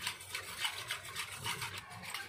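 Wire whisk beating thinned yogurt and water in a stainless steel bowl: a quick, rhythmic swishing and splashing of liquid, about three to four strokes a second, churning the buttermilk to raise froth.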